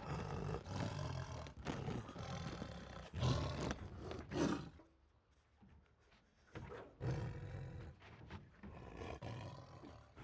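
A tiger roaring in rough, rasping bursts for the first few seconds. It stops suddenly about halfway through, and after a short pause roars again for the next three seconds.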